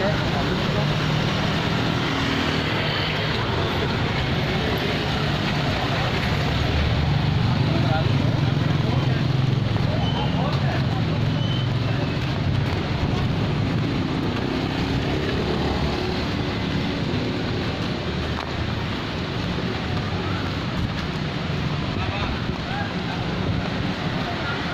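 Street traffic from passing cars and motorbikes, a steady low rumble, with wind buffeting the camera's microphone.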